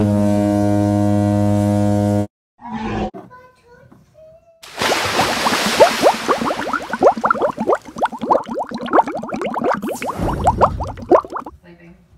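A steady low buzzing hum that cuts off abruptly after about two seconds. A few seconds later, water splashes and bubbles in a metal bowl for about six seconds as a doll is dunked into its bath, with many quick gurgles.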